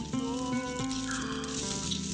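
Film soundtrack: orchestral score with long held notes, under a rabbit character's distressed cry of "All gone!"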